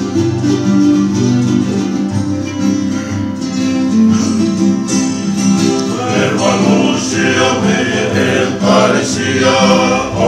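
Acoustic guitars and a ukulele strumming together. About six seconds in, a group of men join in singing in harmony.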